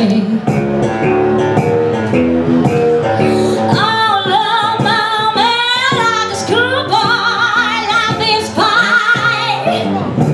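Live blues on guitar and female voice: the guitar picks out notes on its own, then about four seconds in the woman comes in singing long held notes with a wide vibrato over it.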